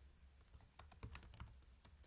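Faint typing on a computer keyboard: an irregular run of quick keystrokes.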